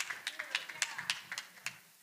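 Scattered audience clapping, the separate claps thinning out and fading toward the end, with a few voices murmuring underneath.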